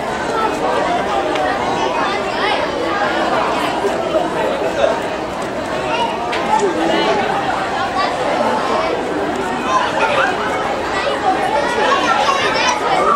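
Crowd chatter: many overlapping voices of spectators talking at once, steady throughout, with no single voice standing out.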